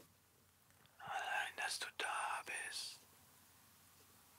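Two recorded whispered vocal tracks played back quietly: a man's whispered phrases, breathy and without voiced pitch, for about two seconds starting a second in. These are the raw takes, still very quiet before any compression or processing.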